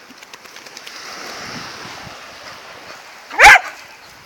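Small waves washing on the shore, then a single loud dog bark about three and a half seconds in.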